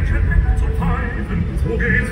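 Steady low road rumble inside a moving car, with a voice and music over it.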